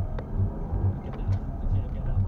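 Car driving noise heard inside the cabin: a steady low engine and road rumble with a low throb repeating about two to three times a second, and a faint click about a quarter second in.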